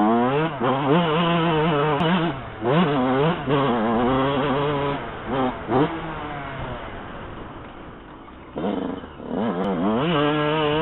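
Yamaha YZ125 two-stroke motocross engine revving hard, its pitch climbing and dropping repeatedly through quick throttle blips and gear changes. About six seconds in the throttle is shut over a jump and the revs fall away for a couple of seconds, then it revs hard again near the end.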